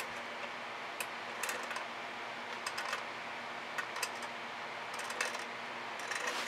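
Faint, scattered light clicks and taps, about half a dozen, from a paint-swiping tool and a canvas board being handled, over steady room noise with a low hum.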